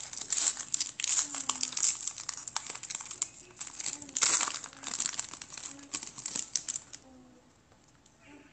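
Foil wrapper of an Upper Deck Artifacts hockey card pack being torn open and crinkled by hand: a dense, crackly rustle with a louder burst about halfway through, stopping shortly before the end as the cards come free.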